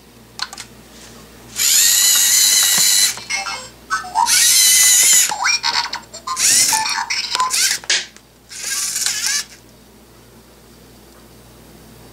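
Servo motors of a LEGO Mindstorms EV3 SPIK3R spider robot whining in four bursts, from under a second to about a second and a half each, some sliding down in pitch as they stop, as the robot crawls and its tail attacks. Short clicks come between the bursts.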